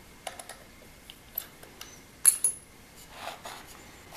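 Small metal parts being handled on a bench: light clicks, then a sharp double clink a little past halfway as a metal drive hub is slid off a motor shaft and set down.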